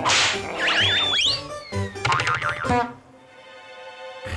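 Cartoon slapstick sound effects over background music: a wobbling, warbling boing about a second in, a long falling glide and a few sharp hits. A quieter held musical tone follows in the last second.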